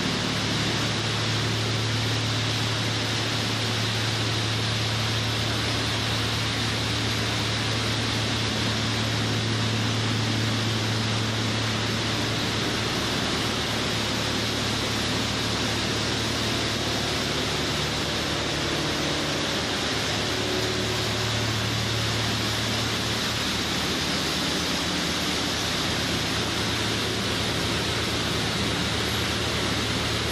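Machinery running steadily: an even rushing noise over a low hum that does not change.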